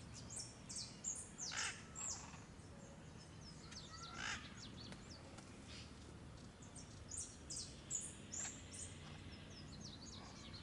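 Birds calling, with clusters of short high chirps in the first two seconds and again around seven to eight and a half seconds. A few lower, downward-sliding calls come between them, over a faint, steady low background hum.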